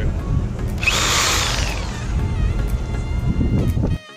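Handheld Bosch jigsaw briefly triggered with no load: the motor whines up about a second in, runs for about a second, then winds down. Low wind rumble on the microphone underneath.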